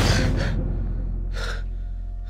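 A man jolting awake with a sharp gasp, then a heavy breath about a second and a half later, over a low, steady music drone.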